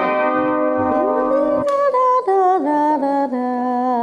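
Music: a piano playing the introduction to a song, a melody of held notes moving up and down.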